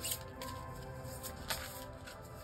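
Quiet background music of steady held tones, with a short rustle of a card being drawn from a deck about a second and a half in.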